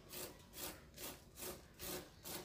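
A hand tool scraping across a cement relief surface, carving wood-grain texture into a faux log, in about five short rhythmic strokes, roughly two a second.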